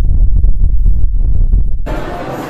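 Loud, deep bass rumble from the sound effects of an edited video intro, with almost nothing above the low end. It cuts off abruptly near the end.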